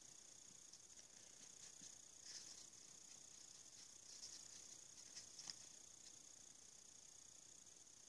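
Near silence with a faint steady hiss, broken by a few faint, short brushing sounds about two, four and five seconds in: a soft brush working metallic powder onto a hot-glue bangle.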